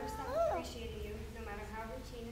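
A woman's voice speaking, reading aloud, with one sharp rise and fall in pitch about half a second in.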